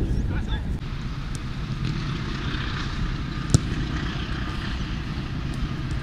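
Open-air football pitch ambience: a steady low rumble with a hiss, broken once about three and a half seconds in by a sharp thud of a football being kicked.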